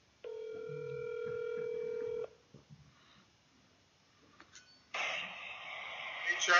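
Telephone ringback tone of an outgoing call: one steady two-second ring that then stops. Near the end a steady hiss comes in as the call connects.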